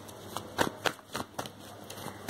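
A deck of tarot cards shuffled by hand: a quick run of short card slaps, about four a second, starting about half a second in.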